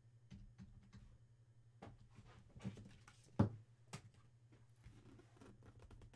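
A few light clicks and taps of things being handled on a desk, with one louder knock about three and a half seconds in, over a low steady hum.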